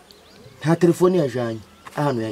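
Speech: a man talking, after a short pause near the start.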